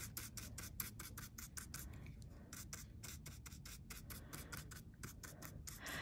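Faint, quick scratchy strokes, about five a second, of an old stiff craft paintbrush dabbing and dry-brushing acrylic paint onto embossed aluminium metal tape.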